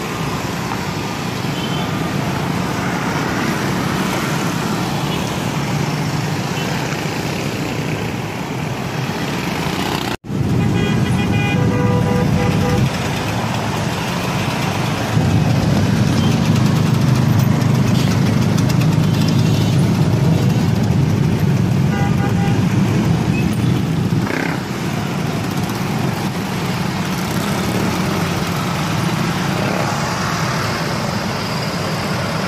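Dense slow street traffic: motorcycle and vehicle engines running close by, with horns sounding now and then, one most clearly just after a brief dropout about ten seconds in. Voices from the crowd mix in.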